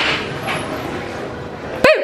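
A steady rushing noise, then near the end a sharp click and a brief high-pitched yelp from a woman's voice that rises and falls.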